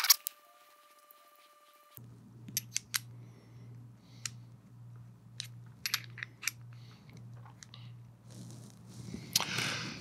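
Small metal clicks and taps of hex screws and an Allen wrench handled while unscrewing the mount from an electronic rifle level, starting about two seconds in and scattered irregularly over a faint low hum.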